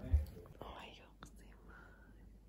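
Quiet whispering, breathy and without voiced pitch, with a short low thump right at the start.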